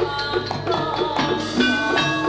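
Javanese gamelan music: struck metallophone notes ringing on one after another over drum strokes, in a steady run of several strikes a second.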